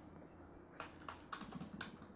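Faint typing on a computer keyboard: a few separate keystrokes, most of them in the second half.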